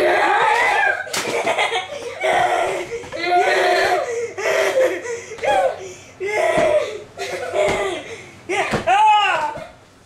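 Children laughing hard in repeated loud bursts, with a single slap about a second in.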